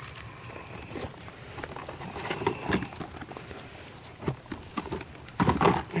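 Knives and leather sheaths being handled in a plastic tool box: scattered knocks and rattles, with a louder clatter near the end.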